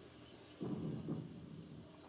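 A man drinking from a mug: short, low swallowing sounds a little over half a second in, over quiet room tone.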